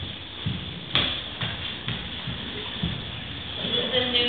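Soft footfalls on a dance-studio floor, about two a second, with one sharp click about a second in; faint voices come in near the end.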